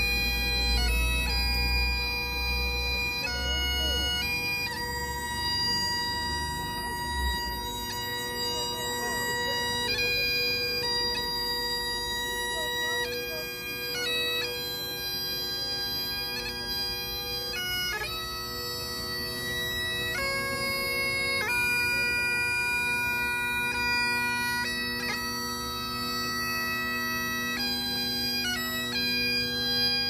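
Great Highland bagpipe played solo: steady drones under a chanter melody that steps between held notes. A low rumble sits under it for the first several seconds, then drops away.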